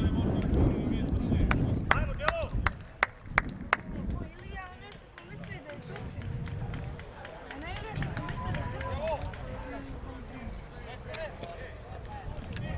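Wind rumbling on the microphone, with a run of about seven sharp hand claps, roughly two a second, between about one and four seconds in. After the claps come distant shouts from players on the pitch.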